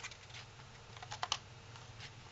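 Folded paper crackling and ticking as hands flex an origami pop-up arc, with a quick run of three or four sharp ticks about a second in.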